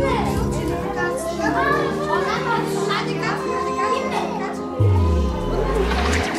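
Background music with children's voices and chatter over it; a deep, sliding bass note comes in near the end.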